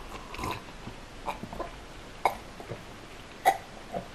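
A person gulping beer from a glass: a string of short swallowing sounds, about seven in four seconds, the loudest near the end.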